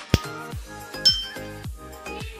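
Two sharp taps of an egg against the rim of a ceramic dish to crack it, the second a louder, bright clink with a brief ring about a second in, over background music.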